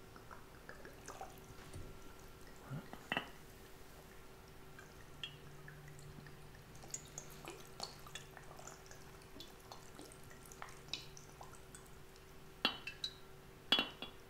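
Vodka poured slowly from a glass bottle into a glass jar packed with cut mandarin and kiwi: a faint trickle soaking into the fruit, with scattered small drips and ticks and a few sharper clicks near the end.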